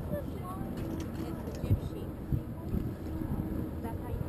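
Low rumble of wind and water on an open motorboat, with a faint steady engine hum and a few brief, muffled, unclear voices near the start.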